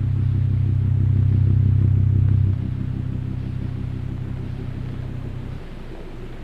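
A low, sustained droning chord with a fast, even flutter, loud at first, then dropping in level about two and a half seconds in and again near the end.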